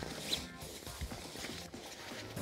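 Faint rustling of a synthetic sleeping bag being stuffed into the bottom of its stuff sack, with a few soft, irregular knocks as it is pushed down.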